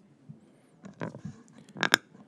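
Faint rustling and small knocks of people moving at a conference table, with a sharper click or knock just before the end.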